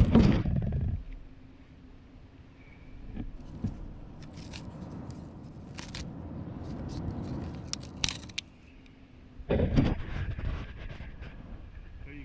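Handling noise from a felt-wrapped plastic dimple-board strip drain being opened and moved close to the microphone: scattered sharp clicks and scrapes over a low rustle, with louder bursts in the first second and again about ten seconds in.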